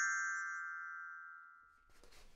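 A children's glockenspiel bar, struck just before, ringing out and fading away over about a second and a half: the chime that cues the listener to turn the page.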